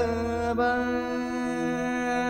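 Live jazz-fusion band music: one long, chant-like pitched note is held steady, with a small shift in pitch about half a second in.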